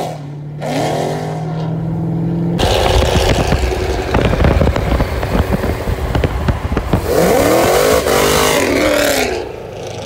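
Dodge Charger with a supercharged 426 V8 accelerating hard on a highway, heard from a car alongside. The engine pitch sweeps up and falls back several times as it pulls through the gears, with a loud, rough stretch in the middle.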